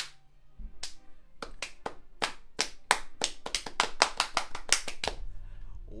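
Hands clapping, a steady run of about five claps a second that quickens toward the end before stopping.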